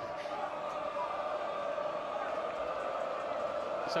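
Football stadium crowd ambience: a steady murmur of many voices with no single voice standing out.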